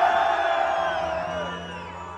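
A long held vocal cry over a concert crowd, amplified through the sound system; it glides down and fades out about a second and a half in.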